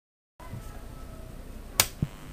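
A low, steady rumble, then a single sharp click near the end.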